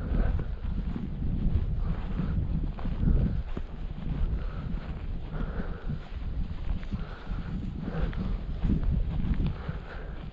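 Wind buffeting the microphone of a walking camera, a low uneven rumble, with irregular footsteps on grass.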